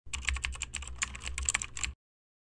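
Rapid computer-keyboard typing clicks, about ten keystrokes a second over a low hum, cutting off suddenly just before the end.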